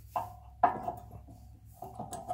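Metal brake parts clinking twice, brake pads against the steel caliper bracket, the second clink leaving a short ringing tone.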